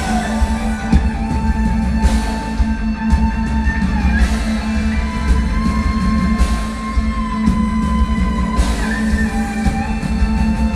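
Live symphonic power metal band playing an instrumental passage: guitars and drums driving underneath, with a held lead melody line on top that changes note every second or two and no singing.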